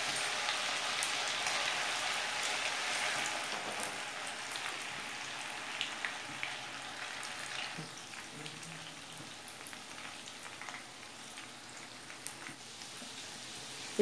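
Par-boiled pasta deep-frying in hot oil in a steel kadhai: a steady crackling sizzle with small pops that slowly grows quieter as the moisture from the freshly boiled pasta cooks off.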